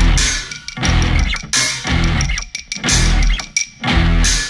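Loud noise-rock band music: bass, guitar and drums strike heavy, repeated hits, a little under a second apart.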